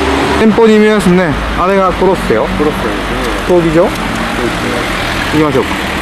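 Voices talking over city street traffic noise, with a car engine's steady hum that fades about half a second in.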